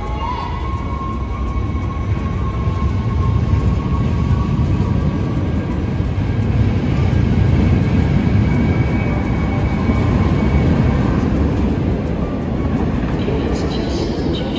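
Dutch NS electric passenger trains moving slowly past the platform, an intercity ending in an ICM 'Koploper' cab car, with a steady low rumble of wheels on rail that swells towards the middle and eases off near the end. A faint steady whine sits above the rumble.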